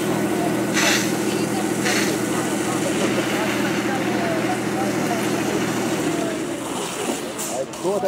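Fire engine's pump engine running steadily while a hose jets water, with a steady hiss over it. The engine note falls away about six and a half seconds in. Voices in the background.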